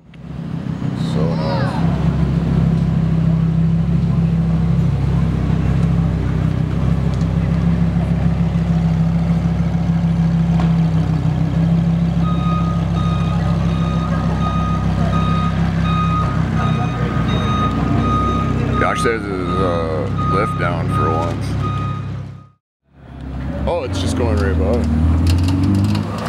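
Lamborghini Huracán STO's V10 engine running steadily at low revs as the car creeps away. About halfway through, a steady high beeping joins it and carries on to near the end.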